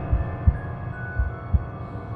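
Slow heartbeat-style low thumps in pairs, about one beat a second, over a dark sustained drone with faint held high tones: suspense sound design in a film-trailer score.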